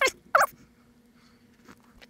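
A man's short, high-pitched laugh in quick wavering bursts, ending about half a second in.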